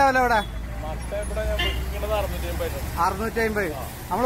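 Men talking in short bursts over a low, steady rumble that swells in the middle and fades about three seconds in.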